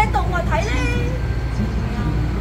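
A person's voice speaking for about the first second, then pausing, over a steady low rumble.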